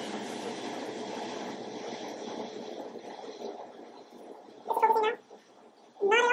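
A steady noise that slowly fades over about four seconds, then a domestic cat meows once, briefly, about five seconds in.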